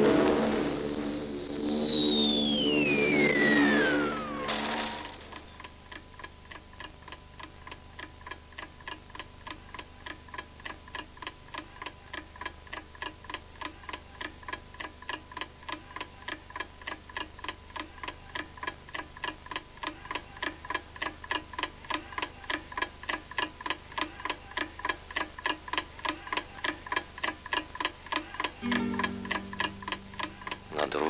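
A long whistle falling steadily in pitch over a held low chord, then a clock ticking evenly and steadily.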